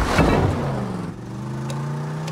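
Car engine running hard at speed, with a loud rushing burst in the first half-second before the engine note settles into a steady drone.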